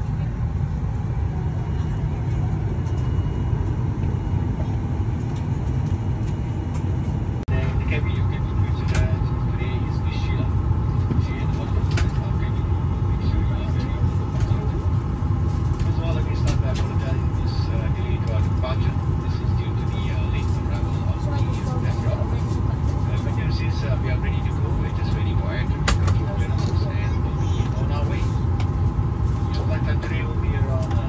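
Cabin of a Boeing 737-8 airliner parked at the gate: a steady low rumble of the aircraft's running air systems, with passengers' voices murmuring and small knocks and clicks in the background. The sound changes at an edit about seven seconds in, after which the clicks and voices are more distinct.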